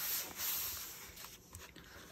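A hand rubbing across a paper journal page: a soft, dry swishing that fades out within the first second.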